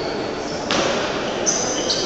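Indistinct voices and table tennis ball bounces echoing in a large sports hall. From about halfway through come several short, high-pitched squeaks.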